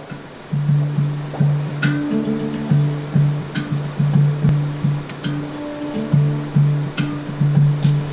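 Handpan (hang drum) played by hand: a low note struck over and over in a quick, even rhythm, with higher ringing notes above it and a few sharp taps.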